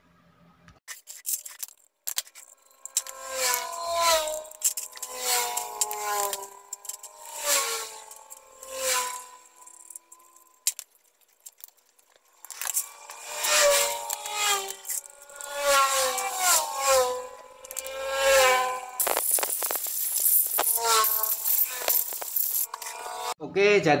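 A man's voice, talking unclearly, over small clicks and clatter of fuel-pump parts being handled in a metal tray, with a rustling hiss for a few seconds near the end.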